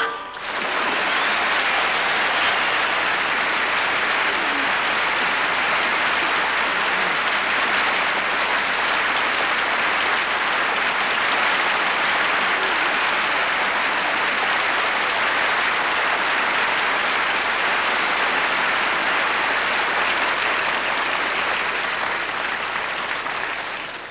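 Sustained applause from a large theatre audience, steady throughout and tapering off near the end.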